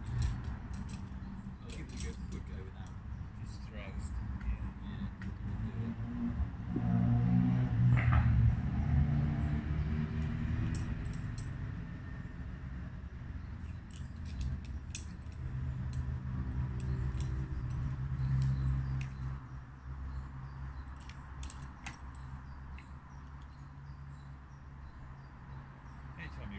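Metal climbing gear giving light, scattered clinks and clicks over a low droning hum that swells about eight seconds in and again near eighteen seconds.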